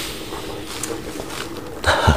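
Steady whooshing noise from a pot of water at a hard rolling boil.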